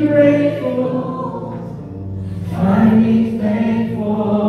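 Several voices singing a slow contemporary worship song together in two long held phrases, over sustained instrumental chords.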